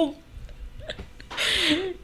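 A woman's short breathy laugh, a half-second puff of breath with a faint voiced glide, in the second half after a spoken word and a brief pause.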